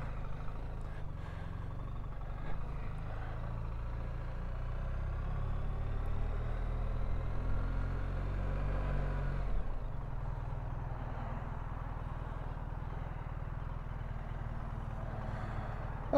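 BMW R1300GSA's 1300 cc boxer twin engine running at low revs as the motorcycle moves off slowly, changing to a steady idle about ten seconds in.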